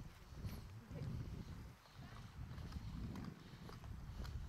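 Footsteps on a dirt trail, a scatter of light crunching steps over a steady low rumble.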